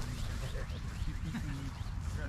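Open-air ambience: a steady low rumble with faint distant voices and a few faint high bird chirps.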